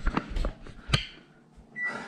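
A few light clicks and knocks in the first second, then a short, high, steady beep near the end.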